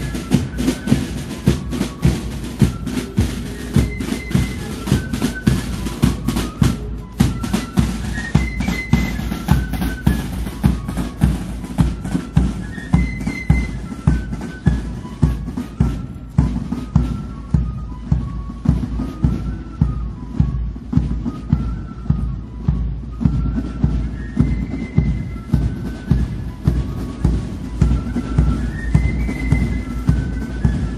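Military corps of drums playing a quick march: fifes carry a high melody over side drums and a bass drum keeping a steady beat of about two a second.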